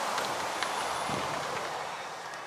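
Steady background noise with one or two faint taps, as a handheld camera is carried in through an entrance door.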